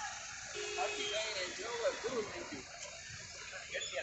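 Roadside crowd noise: several people talking over traffic, with a short steady tone, like a vehicle horn, about half a second in.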